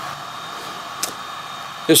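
Steady background hiss of room noise, with a single short click about a second in.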